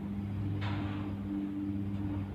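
Steady low electrical hum from a grid-tie wind-turbine inverter working under load. A rush of gusty wind joins it about half a second in.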